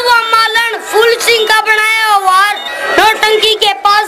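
A boy singing a Haryanvi ragni into a stage microphone in a high voice, with long held notes that bend and waver, over a faint steady held tone.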